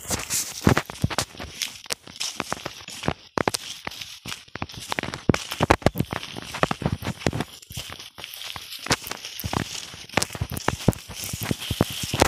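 Footsteps through dry leaf litter and undergrowth in a banana grove, a dense run of irregular sharp clicks and snaps from twigs and dry leaves underfoot and brushing past.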